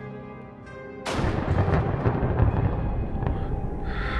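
Soft music, then about a second in a thunderclap breaks in suddenly and rumbles on with a rushing hiss of heavy rain.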